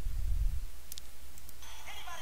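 A steady low hum with a single sharp click about a second in; faint music comes in near the end.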